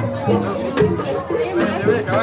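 People talking over one another, with jaranan music playing behind the voices.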